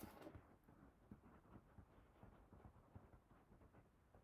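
Near silence with faint, irregular scratching of a pen writing on a small paper tag.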